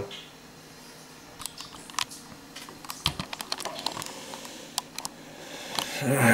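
Handling noise: a run of light, irregular clicks and taps as small parts are handled close to the microphone.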